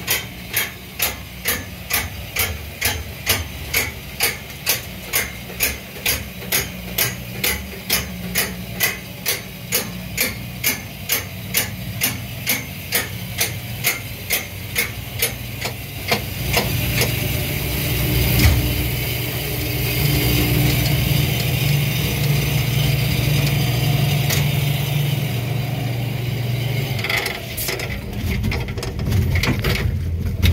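Backyard roller coaster climbing its lift hill, the anti-rollback ratchet clacking evenly about twice a second. About sixteen seconds in, the clicking stops and the train rolls off the top, its wheels rumbling steadily along the track.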